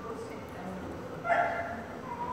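A dog barks once, briefly, just over a second in.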